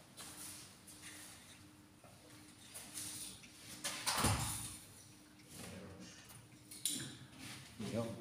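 Faint steady hum in a quiet hall, broken by one sharp knock about four seconds in, the loudest sound, and a shorter click near the end.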